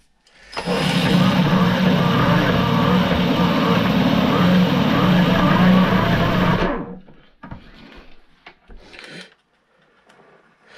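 A cordless drill runs steadily for about six seconds, spinning a metal screw head against a grinding wheel to grind its diameter down, then stops. A few faint handling sounds follow.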